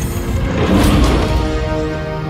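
Orchestral film score with sound effects: a sharp hit at the start, then a heavy crash with deep rumble peaking about a second in, after which held orchestral chords carry on.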